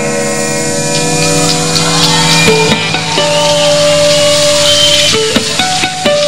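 Live rock band playing an instrumental break: an electric guitar chord rings on, then single guitar notes come in about two and a half seconds in, with one long held note, over bass and drums.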